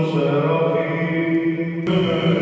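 Male voices chanting Byzantine chant, with a slowly moving sung melody over a steady low note held underneath. There is a brief sharp click near the end.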